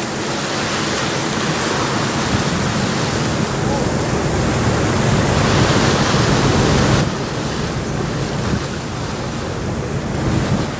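Steady wind and rushing water noise on a moving ferry's deck, with wind buffeting the microphone. It builds slightly, then drops off abruptly about seven seconds in.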